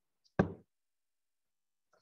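A single sharp knock about half a second in, a stylus striking the tablet screen while writing, then near silence.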